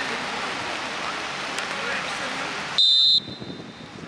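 A short, sharp referee's whistle blast near the end, the loudest sound here, coming after a stretch of outdoor pitch ambience with faint voices.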